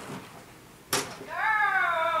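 Agility teeter (seesaw) board banging down once, sharply, about a second in as the dog rides it over. It is followed by a long, high-pitched vocal call that falls in pitch.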